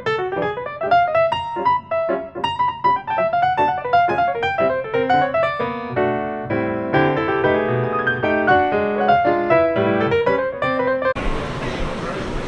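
Piano music played as a fast, busy run of notes. Near the end it cuts off suddenly and gives way to the background noise of a crowded airport gate area.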